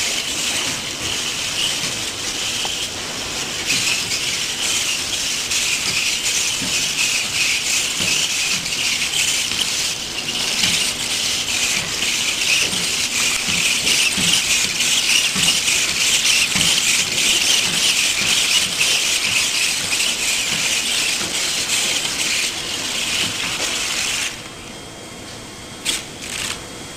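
Servo motors of a small four-legged walking robot whining continuously as it steps and flexes its legs. The whine drops away sharply near the end.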